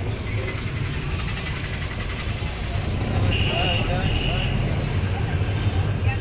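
Car engine and road noise heard inside the cabin while driving, a steady low rumble. Two short high beeps come near the middle.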